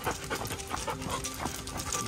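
A dog panting in quick, short breaths while trotting on a leash.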